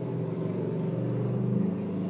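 Kitten purring steadily, a low pulsing rumble close to the microphone.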